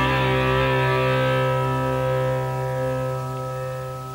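A rock band's last chord, held on distorted electric guitars and slowly fading away as the song ends.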